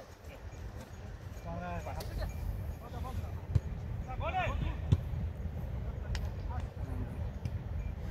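Men's voices shouting short calls across an outdoor football pitch during play, over a steady low rumble, with a couple of sharp knocks in the middle.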